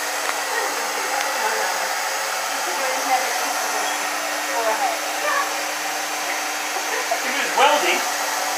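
Handheld hair dryer running steadily, blowing hot air through hair wound on a round brush during a blow-dry: an even rush of air over a steady hum.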